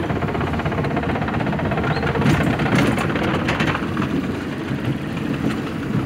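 Roller coaster train being hauled up the lift hill: a steady mechanical rattle from the chain lift, with a few sharper clacks in the middle.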